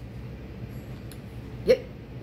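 Quiet room with a steady low hum and a faint tick or two, then a single short spoken "yep" near the end.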